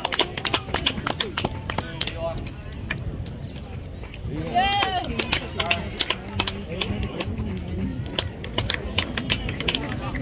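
Outdoor crowd voices: scattered chatter with one raised call about five seconds in, over many irregular sharp clicks.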